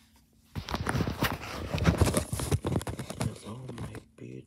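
Handling noise on the camera's microphone: a dense run of rubbing, scraping and knocking that starts about half a second in and goes on for about three seconds. It comes as the device is moved and uncovered.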